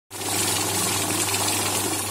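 Electronic banknote counting machine running, its motor humming steadily while a stack of notes riffles rapidly through the feed at about 25 notes a second.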